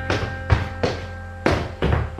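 Footsteps thudding down a flight of stairs, about five heavy steps, under background music with steady held tones.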